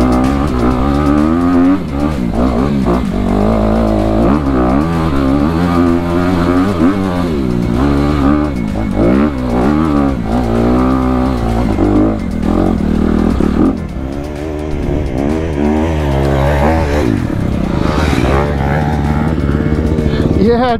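Honda CRF250RX single-cylinder four-stroke dirt bike engine revving up and down under load on a climb. Its pitch rises and falls every second or so as the throttle is worked.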